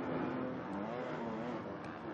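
Several motocross bikes' engines running close together, their pitch rising and falling as the riders work the throttle.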